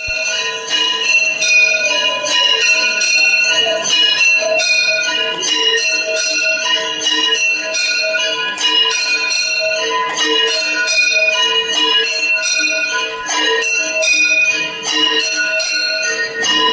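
Temple bells rung rapidly and continuously during aarti: overlapping ringing tones under a fast, even run of strikes.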